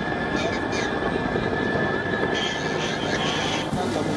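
A steady vehicle engine and road noise, with the mixed voices of a crowd of people underneath and a brief rise of hiss in the middle.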